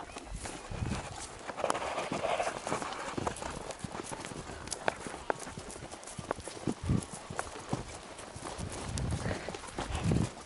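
A horse walking on grass, its hooves landing in soft, scattered thuds with small clicks and rustles as it follows close by.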